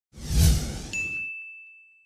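Logo sting sound effect: a rushing swell with a deep low boom, then a single bright ding about a second in that rings on and slowly fades away.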